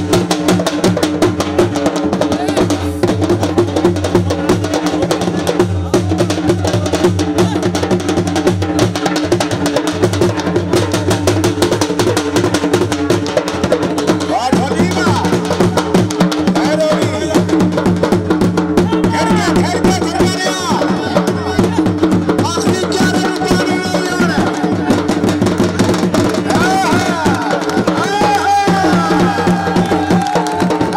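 Dhol drums beaten in a fast, driving jhumar dance rhythm, with a steady held tone underneath.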